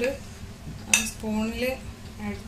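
One sharp metallic clink about a second in: a steel spoon striking metal cookware.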